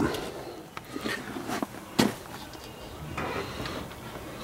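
Handling noise from wiring being moved by hand under a pickup's dashboard: soft rustles and small clicks, with one sharp click about two seconds in.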